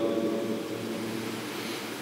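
A pause between spoken phrases: steady background hiss of the room picked up by the lectern microphone, with a faint trace of the last word dying away at the start.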